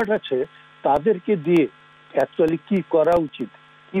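A man speaking over a remote video-call link, the sound cut off above the middle treble, with a steady electrical hum beneath his voice.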